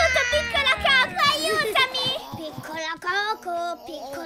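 Background music with children's voices playing over it, including playful vocal sounds and snatches of singing, their pitch sometimes wavering.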